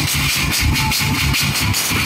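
Marching band snare drums played together by many drummers, a fast, even beat of stick strokes.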